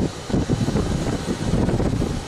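Wind buffeting an outdoor microphone: an uneven low rumble, about as loud as the speech around it.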